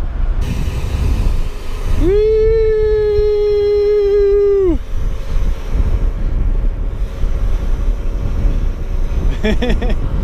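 Wind rushing over the chest-mounted camera's microphone as a mountain bike descends a paved road at speed. About two seconds in, one loud held tone, sliding up at its start and down at its end, lasts nearly three seconds; a brief broken pitched sound comes near the end.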